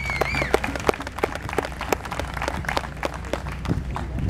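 Audience applauding, a patter of many separate hand claps, with a brief high-pitched call near the start.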